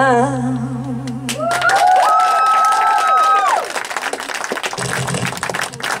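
A singer's last held note with a wide vibrato over a sustained accompaniment chord, ending in the first second or two, then audience applause. Over the start of the applause a high voice holds a note for a couple of seconds before fading into the clapping.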